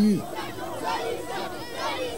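A crowd of many people cheering and shouting together in jubilation, voices overlapping.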